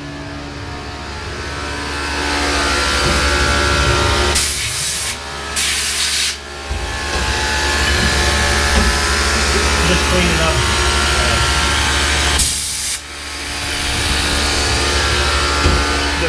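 Tormach PCNC 1100 CNC mill running a toolpath, its spindle and end mill cutting an aluminum part with a steady whine and hum that grows louder as the machine is approached. Three short bursts of hiss break in, two close together and one later.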